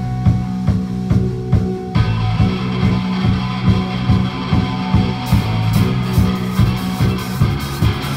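A live rock band playing: drums and bass guitar on a steady beat, with electric guitars coming in about two seconds in to fill out the sound, and cymbals joining on the beat a few seconds later.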